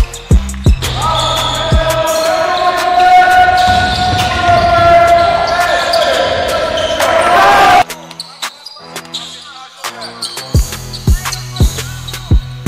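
Basketball bouncing on a hardwood gym floor: a few sharp bounces at the start and a quick run of dribbles near the end. In between, a held, pitched sound of several tones runs for several seconds and cuts off suddenly.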